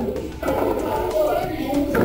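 Background chatter of students' voices in a classroom, with no clear words.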